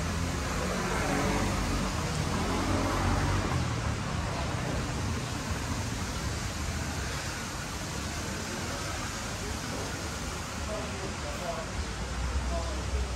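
Steady outdoor ambient noise with faint voices in the background, and a low rumble during the first few seconds.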